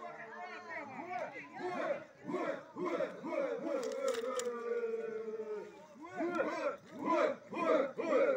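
A group of Kayapó men chanting a war cry together, many voices calling out in bursts with a long held call around the middle.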